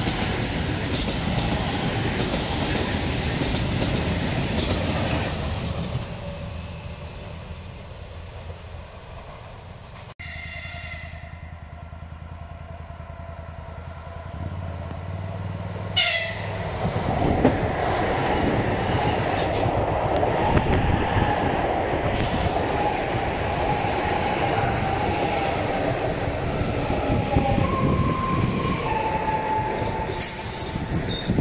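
EG2Tv Ivolga electric multiple-unit trains running past at speed: a steady rush of wheels with clickety-clack over the rail joints. Partway through, the sound drops to a quieter stretch. A horn then sounds about halfway through as the next train comes in and runs past loudly.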